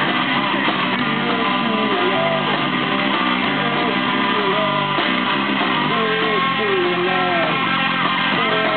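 Live punk rock band playing an instrumental passage on electric guitars, bass and drums, steady and loud, with a guitar line whose notes slide up and down.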